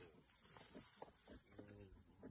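Near silence: faint outdoor ambience, with a faint pitched sound about three-quarters of the way in.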